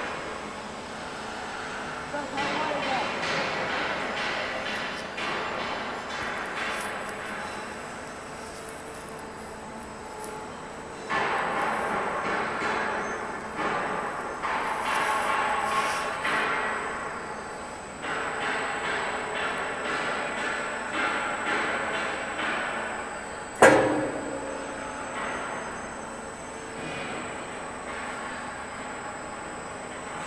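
Heavy-gauge U-channel roll forming machine running with 6 mm steel sheet, the strip grinding through the forming roll stands in noisy swells that rise and fall every few seconds. A single sharp metallic bang, the loudest sound, comes about two-thirds of the way through.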